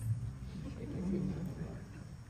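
Indistinct low-pitched voices, loudest about a second in.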